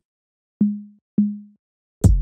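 A single low, pitched drum sample from an Ableton Live drum rack, struck twice about half a second apart. Each hit is a short knock followed by a low ringing tone that dies away quickly.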